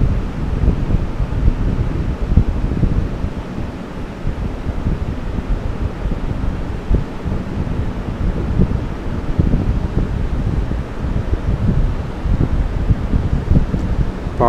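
Low, uneven rumbling noise on the microphone, like air buffeting it, with no speech over it.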